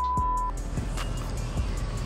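A steady 1 kHz test-tone beep of the kind paired with TV colour bars, cutting off sharply about half a second in, followed by background music.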